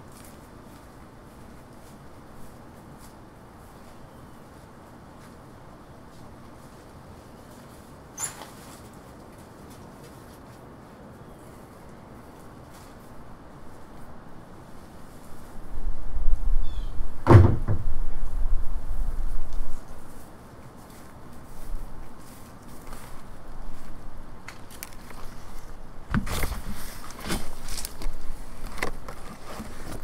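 Quiet background for about the first half, with one small click. Then, as a large banana leaf is carried up to the microphone, come a low rumble, one loud knock about halfway through, and a run of knocks and rustles near the end as the leaf and camera are handled.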